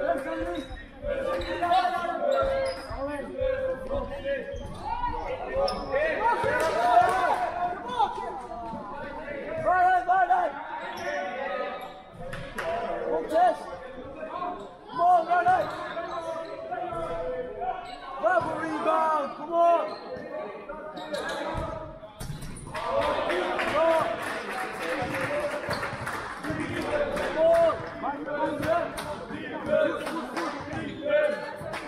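Basketball bouncing on a sports-hall floor during play, with players' and spectators' shouts echoing in the hall. The voices get louder and busier for a few seconds past the middle.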